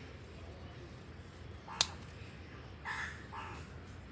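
One sharp snip of scissors cutting through a tulsi stem, a little under two seconds in. About a second later come two short, harsh calls close together.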